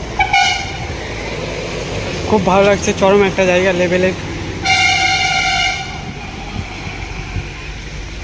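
Vehicle horn sounding twice: a short toot just after the start and a longer, steady blast of about a second some five seconds in, over a steady low rumble of road traffic.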